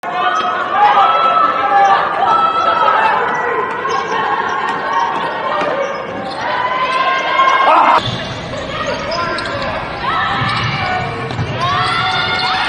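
Live basketball game sound in an echoing, nearly empty gym: a ball bouncing, short squeals of sneakers on the hardwood and players calling out. The sound changes abruptly about eight seconds in, at a cut to another game.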